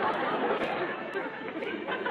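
Audience crowd noise: a dense babble of many voices chattering, easing off slightly after about a second.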